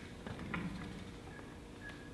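A pause in speech: quiet room tone with a low hum and a few faint clicks, and brief faint high blips near the end.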